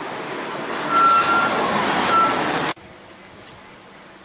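A loud, steady rush of vehicle noise with two short high-pitched beeps, about one and two seconds in. It cuts off abruptly a little after two and a half seconds.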